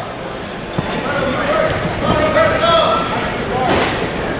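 Voices in a large echoing sports hall: people calling out and talking over a steady background of crowd noise, with one short knock about a second in.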